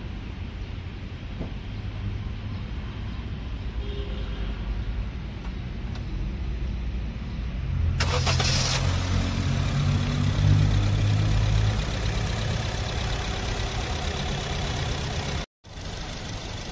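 Honda Mobilio RS's 1.5-litre i-VTEC four-cylinder engine starting about halfway through: a short burst as it cranks and catches, then a steady idle, smooth and soft, that eases slightly lower after a few seconds. Before the start there is only a faint low rumble.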